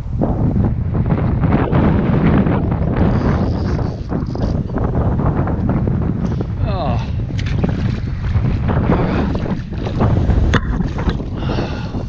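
Wind buffeting the microphone, a heavy low rumble over the rush of river water, with brief higher sounds about seven seconds in and again near the end.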